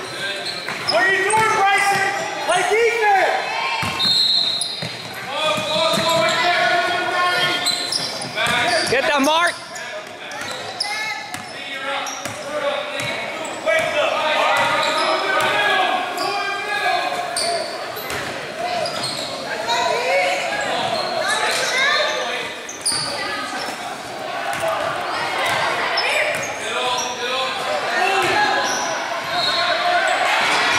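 Basketball game in an echoing gym: the ball bouncing on the hardwood floor over a steady mix of people shouting and calling out.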